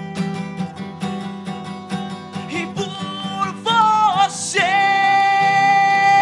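Acoustic guitars strumming a steady rhythm, joined a little past halfway by a male lead voice that slides around and then belts one long held note.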